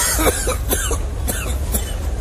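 A person coughing in several short bursts over a steady low hum.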